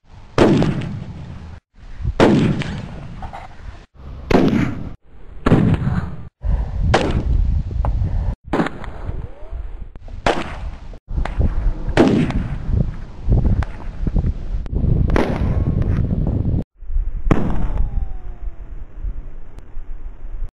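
About a dozen gunshots on a shooting range, each sharp crack followed by a short echoing tail. They come in quick succession, with several abrupt cuts to silence between them.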